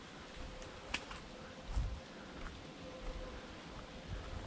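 Soft footsteps and rustling on a leaf-covered woodland trail, with a sharp click about a second in and a soft low thump near the middle.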